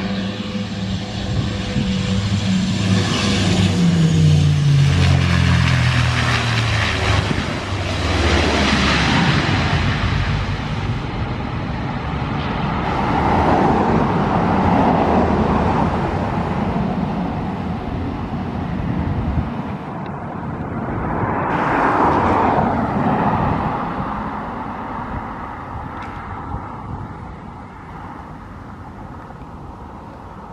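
Embraer EMB-120 twin turboprop landing. Its propeller and engine drone falls in pitch as it passes over the threshold and touches down, followed by several swells of engine noise as it rolls out along the runway, fading away near the end.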